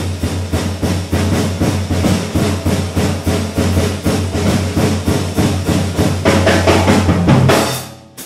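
Live funk-jazz groove led by a busy drum kit over a steady low Hammond B-3 organ bass line. The playing swells near the end and breaks off sharply at the close.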